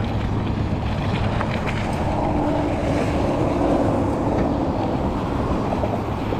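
Schwinn Copeland hybrid bike's gravel tyres rolling over a gravel path, with wind on the microphone, making a steady noise.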